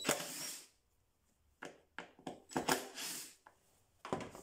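Tool and handling noise at a plastic air filter housing cover as its Torx screws come out. A short scraping, rushing burst comes at the start, then a run of sharp clicks and taps from about halfway through.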